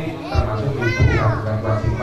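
A child's high voice calls out once about a second in, rising then falling in pitch, over ongoing speech and a steady low hum.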